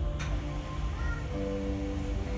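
Slow background music of long held notes over a low rumble. A brief click comes just after the start, and a short high wavering tone about a second in.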